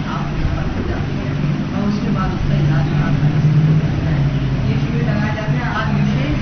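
A woman talking over a steady low hum.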